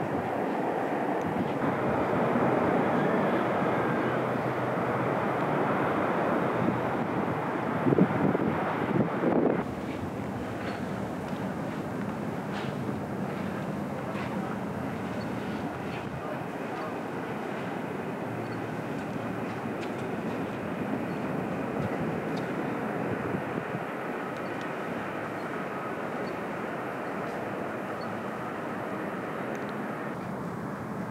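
Steady outdoor rumbling noise, louder through the first ten seconds with a few bumps near the end of that stretch, then dropping abruptly to a quieter, even background.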